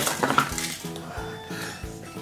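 Soft background music with a few short clicks and clinks from a Kinder Surprise chocolate egg and its plastic toy capsule being handled and opened. The sharpest click comes right at the start.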